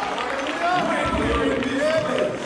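Men's voices from a gospel vocal group, singing and calling out in held, gliding notes. There is a low thud about a second in.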